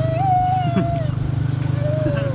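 Motorcycle engine of a tuk-tuk running steadily with an even low pulse. Over it comes a high, wavering, voice-like tone held for about a second, then again briefly near the end.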